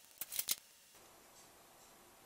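A quick cluster of three or four sharp clicks and rustles in the first half second: a USB-C cable being handled and plugged in. After that only faint room hiss.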